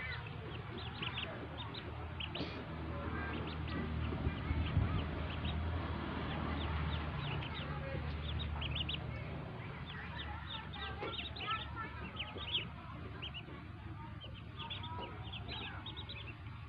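A brood of newly hatched domestic ducklings peeping constantly, many short high peeps overlapping several times a second, over a low steady rumble that is strongest in the first half.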